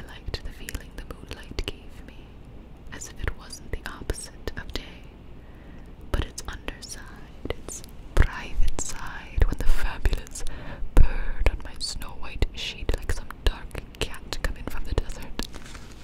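A woman whispering softly close to the microphone, with many small clicks throughout; the whispering is loudest in the middle stretch.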